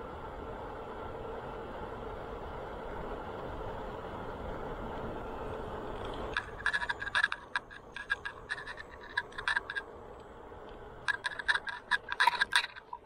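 Bicycle rolling along a paved path with steady wind and tyre noise. About six seconds in, the rolling noise drops and bursts of rapid clicking and rattling from the bicycle start; they pause briefly and come back near the end.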